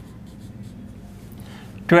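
Marker pen writing on a whiteboard: a few faint scratchy strokes.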